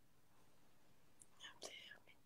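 Near silence, then a faint whisper about one and a half seconds in.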